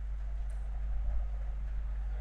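Room tone carried by a steady low hum, with one faint click about half a second in.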